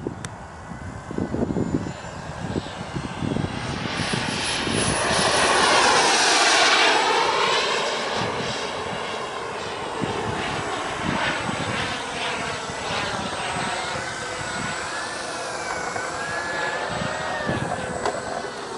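Whine of a jet aircraft's engine flying overhead. It swells to its loudest about six seconds in with a dip in pitch as it passes, then wavers up and down in pitch through the turns that follow.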